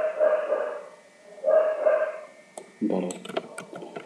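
Two short vocal sounds, each under a second, then a quick cluster of computer mouse clicks about three seconds in as an answer is selected on screen.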